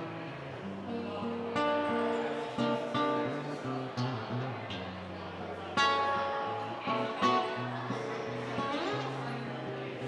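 Acoustic guitar played solo: picked chords over ringing bass notes, with a few sharper strummed hits about six and seven seconds in.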